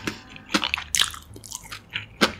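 Close-miked eating sounds: a bite into crisp food, then several sharp crunches as it is chewed. The loudest crunch comes about a second in.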